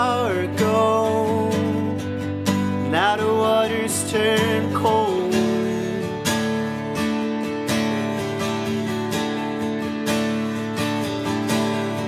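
Live band playing: a strummed acoustic guitar with an electric guitar. A voice sings in the first few seconds, then the guitars play on alone from about five seconds in.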